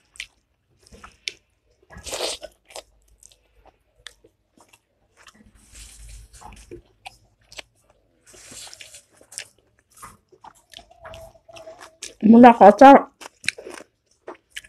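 Close-miked eating: a person chewing and working rice by hand, with scattered small wet clicks and lip smacks and two soft hissing bursts in the middle. A short burst of voice comes near the end.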